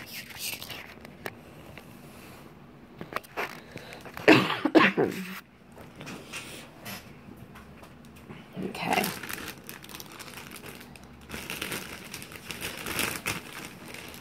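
Thin plastic bag crinkling and rustling as it is handled, with short bursts of voice about four and nine seconds in.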